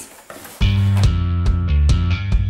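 Background music with bass and a steady drum beat, cutting in suddenly about half a second in after a brief near-quiet moment.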